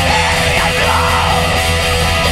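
Loud, dense extreme metal music at an even volume, with distorted electric guitars.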